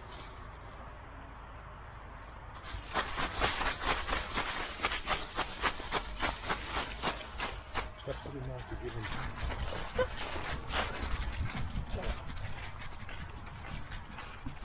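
Dry fallen leaves rustling and crunching in quick, uneven succession under a dog's paws, starting about three seconds in and loosening after the middle.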